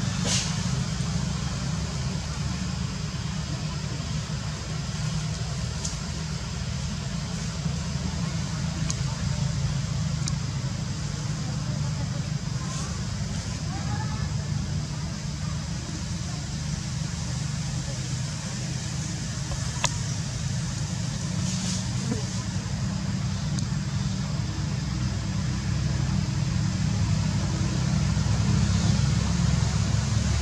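Steady low outdoor background rumble, with a few faint short clicks scattered through it.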